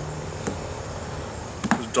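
Quiet handling sounds of onion rings being tossed in flour in a metal bowl by hand, with a faint click about half a second in and a few more just before the end. A low steady hum runs underneath during the first second.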